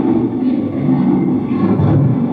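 Reel-to-reel tape recorder playing back a tape at three and three-quarter inches per second: a loud, steady, low-pitched and muffled sound with little treble.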